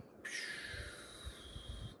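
A man's long breath out through the nose or mouth, a soft airy sigh lasting about a second and a half.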